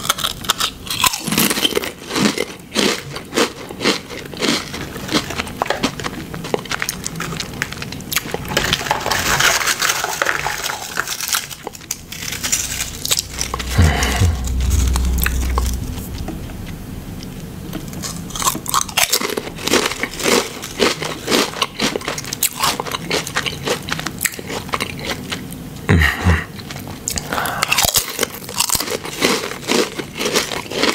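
Close-miked biting and chewing of crunchy ridged potato chips: dense, crackling crunches, with a quieter spell in the middle before the crunching picks up again.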